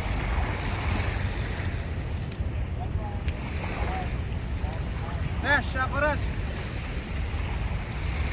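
Wind rumbling on the microphone over the wash of small waves at the shoreline. About two-thirds of the way through, a person gives two short calls.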